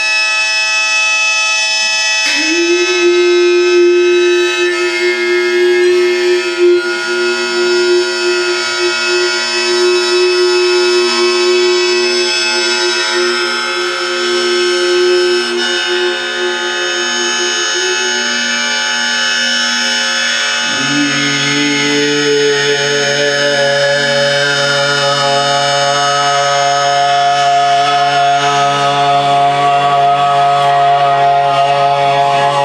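Improvised drone music: a cymbal or gong bowed so that it rings with many high overtones, under a long held wind-instrument tone. About two-thirds of the way through, a new low drone comes in.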